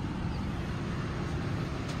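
Steady low rumble of a 2012 Ford Explorer's 3.5-liter V6 idling, heard from inside the cabin.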